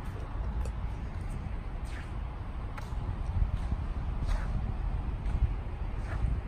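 Outdoor ambience: a steady low rumble with a few faint, short chirps that fall in pitch, about three of them in the middle.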